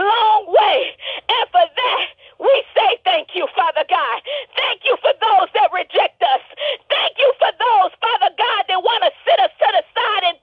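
A person talking rapidly and almost without pause, heard through a narrow-band telephone line.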